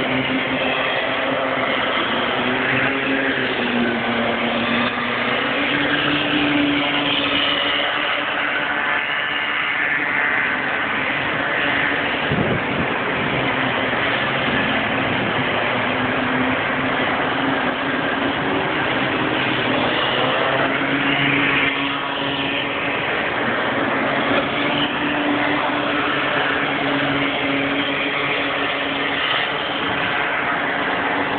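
Small 50cc two-stroke bambino kart engines buzzing around the circuit, their pitch wavering and gliding up and down as the karts accelerate and ease off through the corners.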